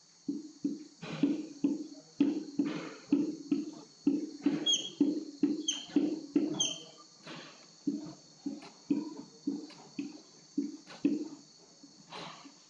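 Dry-erase marker squeaking on a whiteboard as small circles are drawn one after another, about two short strokes a second, with a few higher-pitched squeaks around the middle.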